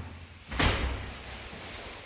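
A door slams shut once, about half a second in, with a short echo after it.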